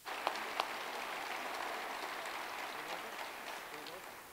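Audience applause: many hands clapping, starting suddenly and dying away near the end.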